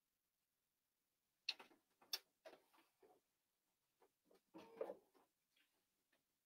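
Near silence, broken by a few faint taps and a short cluster of soft handling noises near the end, as fabric is laid under the sewing machine's presser foot. The sewing machine is not running.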